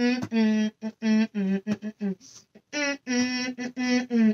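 A boy's voice humming a wordless tune, 'mmm mmm', in a run of short held notes with brief breaks between them.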